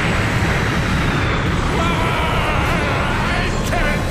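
Anime energy-beam sound effect: a loud, continuous rushing blast of noise with heavy low rumble. From about two seconds in, a strained, wavering yell from a character rises over it.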